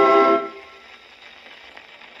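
The last held chord of a 78 rpm record played on a Paragon No. 90 phonograph dies away about half a second in. After it comes the faint hiss and crackle of the record's surface under the stylus.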